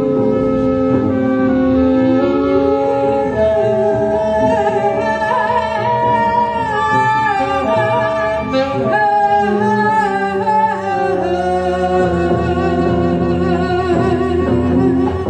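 Free jazz trio improvising: saxophone and bowed strings with double bass, playing long, overlapping held notes that step and slide between pitches.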